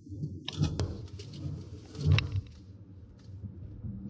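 Road and tyre rumble inside a Lexus RX450h's cabin as the SUV swerves left and right. A few sharp clicks and knocks come through, and the loudest event is about two seconds in.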